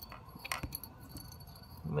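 Faint, scattered clicks and light scrapes from a thin handmade hook working inside a spark plug well, picking at broken coil-boot rubber stuck around the plug. The clearest click comes about half a second in.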